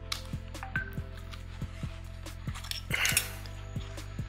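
Background music with sustained tones and a steady bass-drum beat, with a few faint clicks from the plastic body of a DJI Mavic Air drone being handled.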